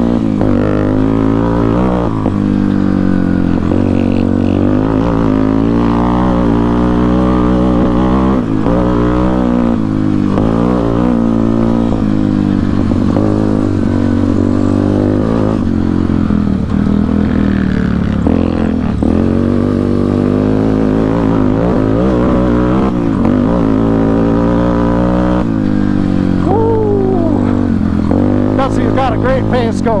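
Yamaha Warrior 350 ATV's single-cylinder four-stroke engine, on an aftermarket exhaust with a carburettor, running under load on a dirt trail. Its pitch rises and falls again and again with throttle and gear changes. A few thin falling whines come near the end.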